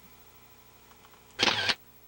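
A single short, sharp click-like noise about a second and a half in, lasting about a third of a second, over a low steady hum.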